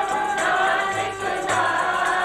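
A group of voices singing a Sikh devotional hymn (kirtan) together, led by a woman at the microphone, over a regular percussion beat.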